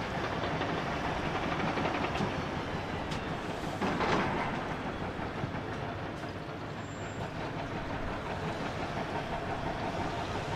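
Several Komatsu crawler excavators working in a rock pit: diesel engines running steadily with scattered clanks of steel buckets on rock, and a louder rumble of rock being dug or dropped about four seconds in.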